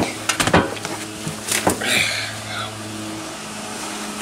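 A plastic scoop knocking and scraping against a plastic worm bin as moist compost is moved, a few sharp knocks in the first two seconds, over a steady low hum.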